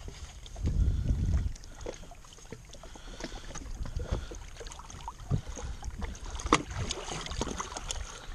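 Water lapping and splashing against a jet ski's hull in shallow water, in small irregular slaps; no engine is heard running. A louder low rumble of wind on the microphone comes about a second in.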